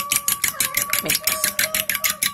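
Metal fork whisking raw eggs in a ceramic bowl, clicking against the bowl in a quick, even rhythm of about seven strokes a second.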